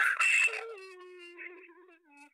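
A person's voice lets out a loud outburst, then holds one long high-pitched note that slowly fades.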